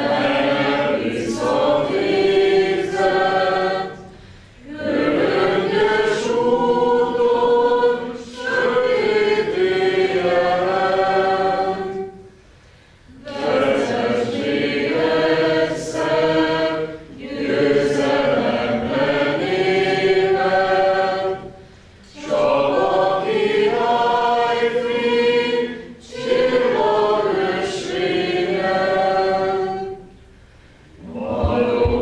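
A crowd of adults and students singing a Hungarian patriotic hymn together, in long slow phrases with a short breath between each.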